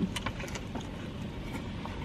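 Chewing and small mouth clicks from people eating a soft wrap, over a low steady rumble.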